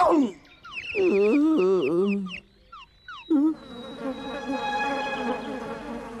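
Cartoon sound effect of a wasp swarm buzzing: a steady drone of many tones that sets in a little past halfway. Before it come a wavering, warbling tone and a few short falling blips.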